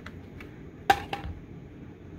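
Two light handling knocks about a second in, the first sharp with a brief ring, the second softer, over a faint steady room hum.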